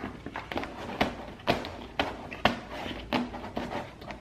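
A hand pressing and smoothing an adhesive-backed plastic stencil onto a paper lampshade: soft rubbing broken by a few sharp taps and crackles from the stencil and paper shade.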